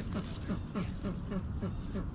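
Hens clucking in quick, short, low notes, several a second, over a low rumble.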